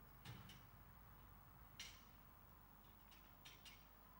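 Near silence broken by a few faint knocks and clicks: a cluster near the start, one just before two seconds in, and a few more near the end, fitting greyhounds being loaded into the metal starting traps and the trap doors being shut.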